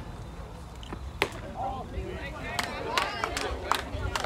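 One sharp pop of a baseball at home plate about a second in as a pitch arrives, followed by players' and spectators' voices calling out, with a few fainter knocks.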